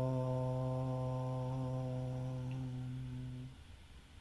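A man chanting a long Om, its closing "mm" held as a low hum on one steady pitch. It fades gently and ends about three and a half seconds in.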